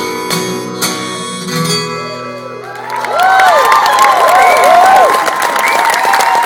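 The last chord of a song on acoustic guitar ringing out and fading, then audience applause and cheering with whistles breaking in about three seconds in, louder than the music.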